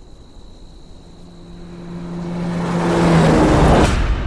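A swelling whoosh of noise over a low held note, growing steadily louder and ending in a sharp hit near the end: a build-up sound effect at the opening of a track.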